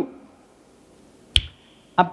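A single sharp click, about a second and a half in, with a brief high ringing tail.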